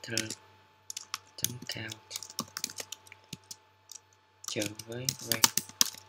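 Typing on a computer keyboard: irregular runs of keystroke clicks as code is entered, thinning out briefly past the middle.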